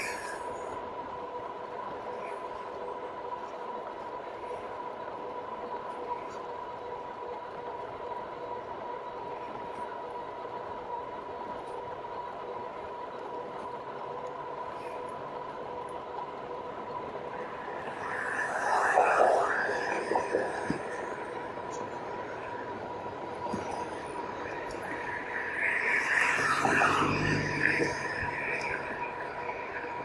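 RadMini e-bike's rear geared hub motor whining at a steady pitch while cruising, over tyre and wind noise. A louder rush of noise comes about 18 seconds in and again near the end.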